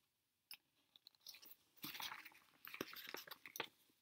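Faint crinkling and small ticks of a cross-stitch kit's packaging being handled and shifted, sparse at first and busier from about two seconds in.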